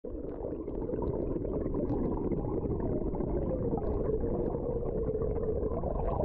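Muffled water sound as picked up by a submerged camera: a steady low rumble with a faint tone that wavers and slowly falls in pitch.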